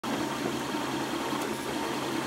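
FlashForge 3D printer running mid-print: a steady hum from its cooling fans and stepper motors, with a few fixed low tones.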